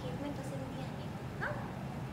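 Faint, indistinct voices, with one short rising yelp-like call about one and a half seconds in.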